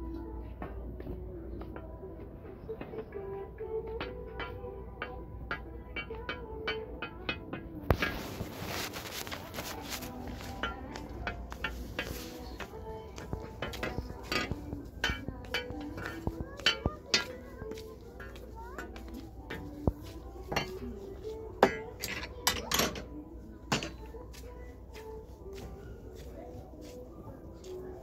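Metal hangers and hooks clicking and clinking against each other and a rack, many small knocks throughout, with a louder rustling clatter about eight seconds in, over background music.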